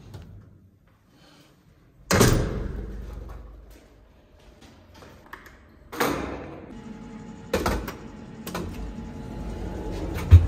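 Skateboard clacking down hard about two seconds in and again near six seconds, each followed by the wheels rolling and fading; two smaller knocks come after, over a steady rolling rumble that grows toward the end.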